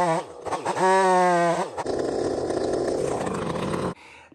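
Two-stroke chainsaw revving high, dropping off twice and climbing back. About two seconds in, the steady note turns into a rougher, noisier sound as the chain cuts into the log under load. The sound stops suddenly at the end.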